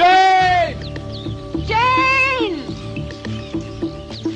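Two long, loud shouted calls of "Jane!", each rising then falling in pitch, about a second and a half apart, over film background music with a steady pulse.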